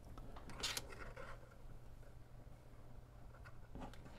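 Faint handling noise of thin wires and a cable being moved by hand on a tabletop: a short rustling scrape about half a second in, then quiet handling with a small click near the end.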